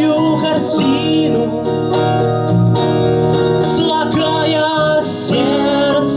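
Live acoustic rock song: an acoustic guitar strummed steadily under a man's singing voice.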